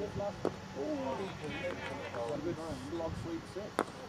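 Quiet voices of players calling on the field, then a single sharp crack of a cricket bat striking the ball near the end.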